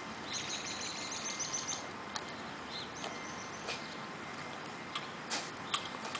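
Outdoor background with a bird's rapid high trill from about half a second in, lasting over a second, followed by a few scattered sharp clicks.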